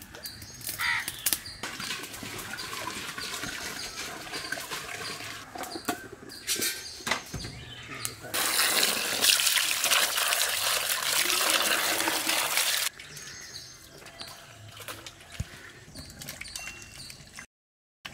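Washing potatoes in water in a large aluminium pot: water splashes and the potatoes knock against the metal as hands rub them. In the middle, water pours into the pot with a loud, steady rush for about four and a half seconds, then stops abruptly.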